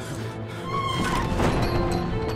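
Film soundtrack music with held tones, joined about a second in by a swelling rush of noise like a crash effect.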